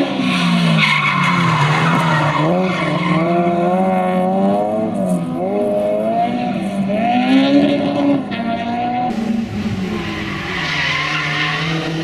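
Honda Civic hatchback race car's engine revving hard, its pitch climbing and dropping again and again through gear changes and corners, with tyres squealing near the start and again near the end.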